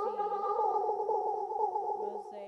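Hologram Microcosm pedal in Mosaic C mode, micro-looping a spoken voice into a dense, rapidly fluttering drone of several steady stacked pitches. It cuts in abruptly at the start.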